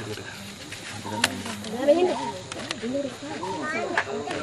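People's voices talking and calling out, with a sharp knock a little over a second in and two lighter clicks near the middle.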